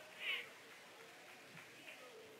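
A person's short, high-pitched vocal sound with a gliding pitch, faint, about a quarter second in, followed by quiet room tone.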